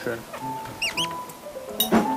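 Background music with two quick, high, upward-curving squeaks about a second in, a comic sound effect laid over the picture. A sharp click comes near the end.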